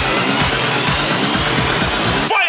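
Electro house dance music with a steady kick drum about twice a second, under a thin synth tone that rises slowly.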